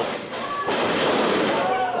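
A wrestler slammed onto the ring mat in a side suplex, a dull thud about two-thirds of a second in, followed by a steady wash of crowd noise in the hall.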